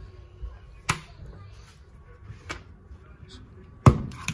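Three sharp plastic clicks from a USB charging cable being unplugged and plugged back into the port of a rechargeable LED work light, with light handling noise between them; the last click, near the end, is the loudest.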